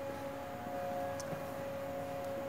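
A steady whine from shop machinery, two held tones at once; the higher tone stops a little over halfway through while the lower one carries on.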